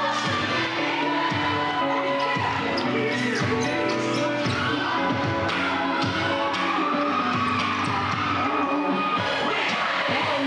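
Dance music playing, with repeated thuds of sneakers stomping and landing on a wooden stage floor throughout.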